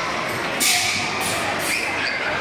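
Background murmur of people in a large reverberant indoor hall. A few short bursts of hiss break through, the loudest about half a second in.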